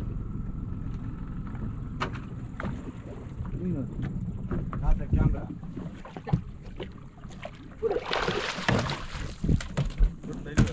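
A hooked fish splashing at the water's surface for about a second and a half near the end, as it is hauled up on a hand line beside the boat. A steady low rumble runs underneath.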